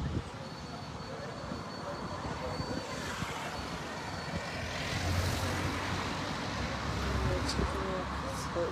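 A motor vehicle's engine noise building up from about three seconds in, with a low rumble growing over the last few seconds, as if a vehicle is drawing near.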